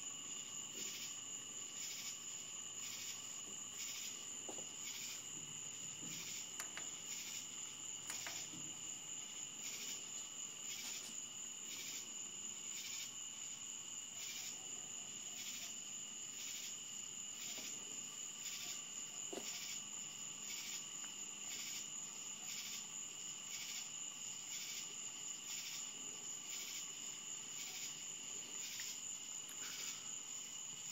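Crickets chirping: a steady high trill with a chirp repeating evenly about one and a half times a second.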